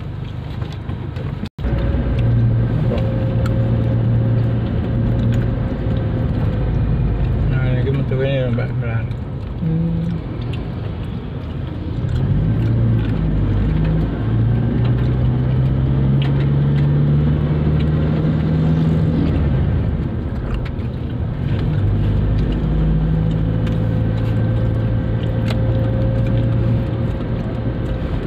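Car engine and road noise heard from inside the cabin while driving, the engine note rising and falling as speed changes. There is a brief break in the sound about a second and a half in.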